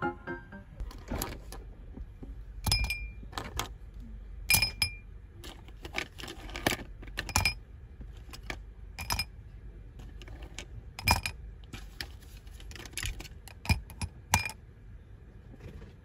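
Plastic pens clinking one after another against a glass jar as they are put into it: about twenty light, uneven clinks, each with a brief glassy ring.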